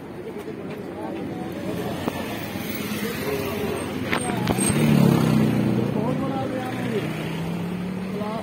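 A motor vehicle's engine running past close by on the road, building to its loudest about five seconds in and then easing off slightly, over a low traffic hum.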